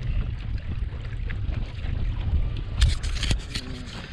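Wind buffeting the microphone, a steady low rumble, with a quick cluster of sharp clicks and knocks about three seconds in.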